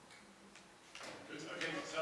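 Speech in a meeting room: a short lull, then a voice starts talking about a second in.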